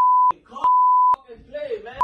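Two steady, high-pitched censor bleeps, a short one at the start and a longer one about half a second in, cutting sharply over a man's angry speech to mask his swearing; his voice continues after them.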